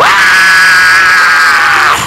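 A man's long, loud, high-pitched shout into a handheld microphone, held at one pitch for about two seconds. It dips slightly at the end and cuts off suddenly.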